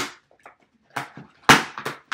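Hands working at the plastic packaging of a small electric screwdriver: a run of clicks and crackles, with one sharp loud snap about one and a half seconds in.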